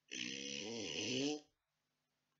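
A voice making a drawn-out hissing, rasping noise over a wavering low pitch. It lasts about a second and a half, then stops suddenly.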